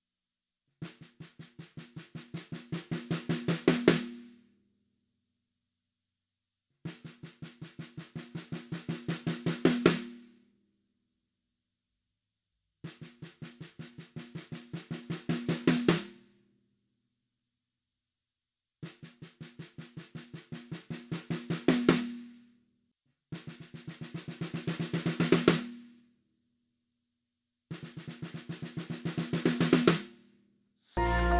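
Snare drum played with sticks in single-stroke rolls: six rolls with pauses between. Each roll keeps an even pace while building from soft to loud, peaking on its last strokes. The last two rolls are shorter and quicker.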